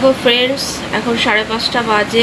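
A woman talking, over a steady faint background hiss.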